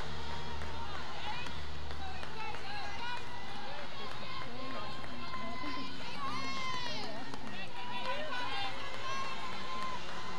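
Softball players calling out and chattering from the field and dugouts, overlapping distant voices, with one louder high shout about six and a half seconds in. A low steady drone fades out about two seconds in.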